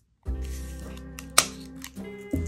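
Background music with one sharp snip about halfway through: scissors cutting through a clear plastic drinking straw.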